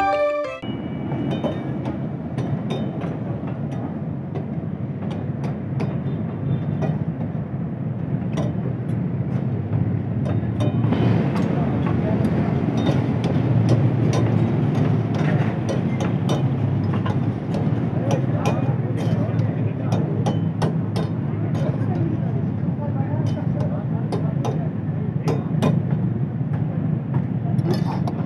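Busy kitchen cooking noise: a steady rumble of gas burners and hot oil frying in karahi woks, with frequent clinks of metal spatulas and ladles against the woks, and voices in the background.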